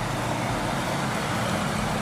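Truck engine running, a steady noise with a faint low hum underneath.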